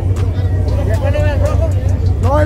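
Race car engine idling with a steady deep rumble, under crowd voices and shouting.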